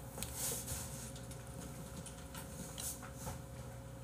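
Faint mouth sounds of someone chewing a gummy bear, soft irregular clicks and smacks over a low steady room hum.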